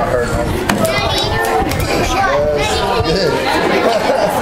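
Overlapping chatter of several voices, children's among them, talking over one another.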